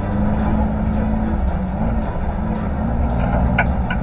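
Rally car's engine running as it drives along a dirt track, heard from inside the cabin, mixed with background music that has a steady beat.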